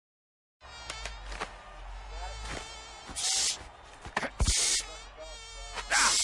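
A fly buzzing, its high pitch wavering as it circles, starting after a brief silence. Three short rushing swishes cut through it, a couple of them ending in a thud.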